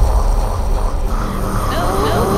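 Horror-film soundtrack: a deep, steady low rumble, joined about halfway through by wavering pitched tones.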